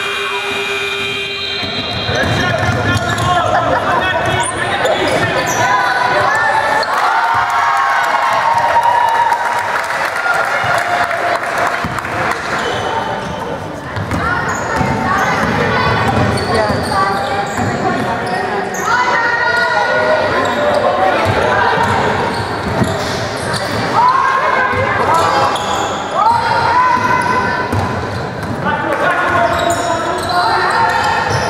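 Basketball game sounds on a hardwood gym court: the ball bouncing on the floor amid indistinct voices, all echoing in the large hall.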